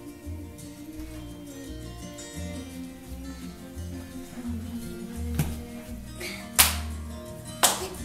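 Recorded acoustic country song playing in the room, with a steady bass beat and guitar, and a few sharp knocks over it in the second half.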